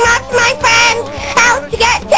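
A song playing: a high, young-sounding voice singing held, wavering notes over a backing track with a steady low beat.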